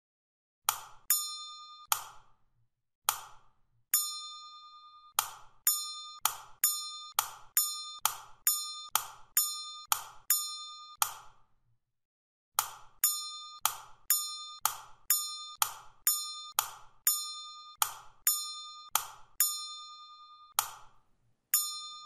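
A rapid series of short bell-like dings, each a sharp strike with a ringing tone that is cut off by the next one. They come about three a second in two runs, with a short pause near the middle.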